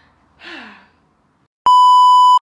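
A breathy sigh with a falling pitch about half a second in. Near the end a loud, steady, pure beep at about 1 kHz cuts in abruptly: the test tone that goes with colour bars, used as an editing effect.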